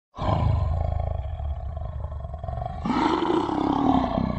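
Lion roar sound effect: a long, low rumbling growl that swells into a louder roar near the end.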